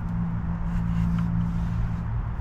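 A machine's steady low hum, with a rumble beneath it.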